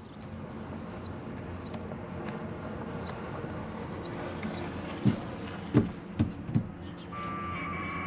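A vehicle's engine running nearby with a steady low hum. A few short bursts of a distant voice come about five to six and a half seconds in, and a steady electronic tone starts near the end.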